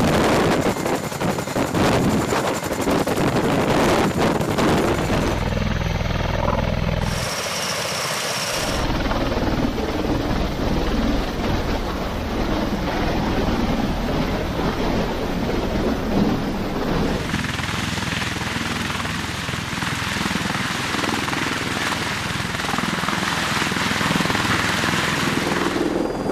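Military rotorcraft running close by, a CH-47 Chinook and then a V-22 Osprey tiltrotor: loud, continuous rotor and turbine engine noise. The sound shifts abruptly several times between different stretches of rotor noise.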